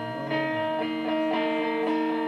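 A band playing live: electric guitar and keyboard holding chords that change about every half second, over a low bass line.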